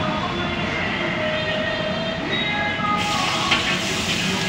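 Steady roar of a gas burner under a large iron wok. About three seconds in, a loud sizzle starts as the stir-fry is worked, with a metal spatula clinking against the wok.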